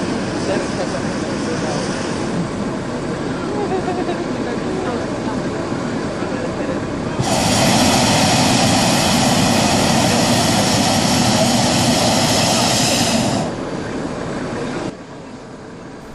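Hot-air balloon's propane burner firing in one long blast of about six seconds, a loud even rush that starts about seven seconds in and cuts off suddenly, over a background of voices.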